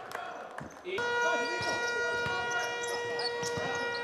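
Basketball game sound: a ball bouncing on the court under a steady, held horn-like tone that starts about a second in.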